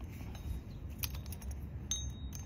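A few light metal clicks, with a short ringing clink near the end, as the wedge of a metal drop wire clamp is slid by hand to give the fiber optic drop cable more slack. A low background rumble runs underneath.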